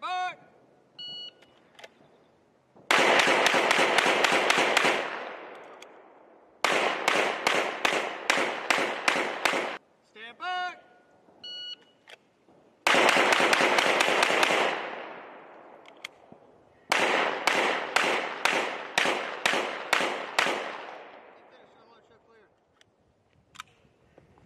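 Strings of rapid pistol fire on an outdoor range, each followed by a long echoing tail. Two of the strings come so fast that the shots run together. The other two come at about three shots a second, with a few seconds between strings. A few short electronic beeps, like a shot timer, sound just before the first string.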